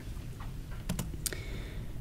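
A few quick clicks of laptop keys, three close together about a second in, over faint room hum.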